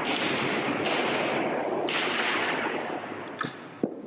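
Emergency hammers repeatedly striking the protective glass over a painting: three sharp cracks about a second apart in the first two seconds, each echoing on, then a couple of fainter knocks near the end.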